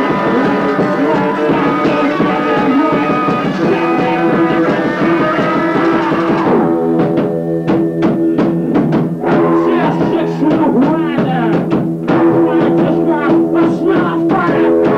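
Live rock band playing: electric guitars and drum kit, loud and dense. About six and a half seconds in, the thick sustained guitar wash drops away into choppier playing punctuated by sharp drum hits.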